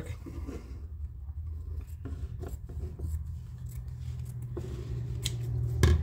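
Scissors cutting a paper shop towel into a strip: irregular short snips, the sharpest near the end, over a low steady background hum.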